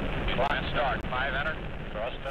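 Saturn IB rocket engines at liftoff: a steady, deep rumble. Over it, a launch-control voice speaks briefly, sounding thin like an old radio link.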